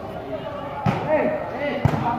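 A volleyball struck twice, about a second apart: two sharp hits over the chatter of voices around the court.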